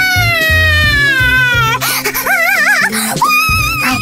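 A cartoon character's voice giving a long, high cry that slides slowly down in pitch, then a short wavering cry, then another held cry near the end, over background music.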